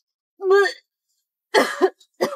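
A young woman's short wordless vocal sounds: a brief voiced sound about half a second in, then a breathier burst about a second later.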